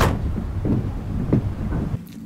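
Low, steady rumble with a few faint short sounds, from the TV episode's soundtrack playing under the reaction.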